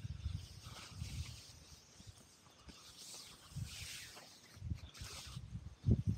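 Hammock and strap being handled: nylon fabric rustling in irregular bursts, with soft low bumps and a sharper knock near the end.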